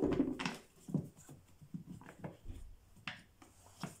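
Scattered light plastic clicks and knocks as the air filter housing cover is seated by hand over a new filter. Right at the start there is a brief voice-like sound.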